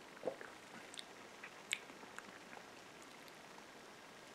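Someone swallowing a mouthful of beer from a glass, followed by faint mouth and lip smacks while tasting, with a few small sharp clicks.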